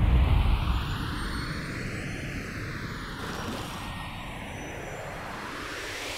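A steady rushing noise with a slow, jet-like flanging sweep that rises and then falls in pitch, dropping in level over the first second.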